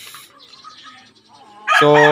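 A lull of faint background sound, then a man's voice comes in loudly near the end with a drawn-out word.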